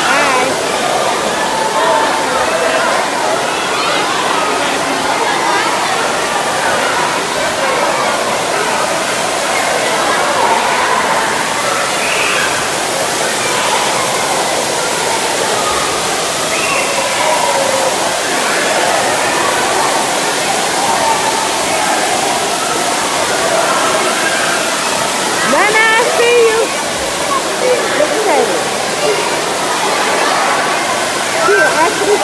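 Steady rush of moving and splashing pool water under a constant babble of many voices, with one high rising call near the end.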